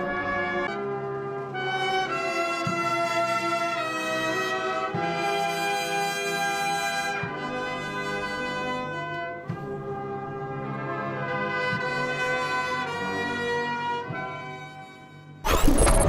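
Brass band playing slow, held chords that change every second or two, fading out near the end. Just before the end a loud, sudden electronic sweep cuts in.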